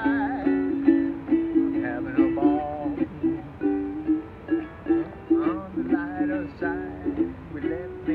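Ukulele strummed in a steady rhythm of chords, about two strums a second, as an instrumental passage between sung lines.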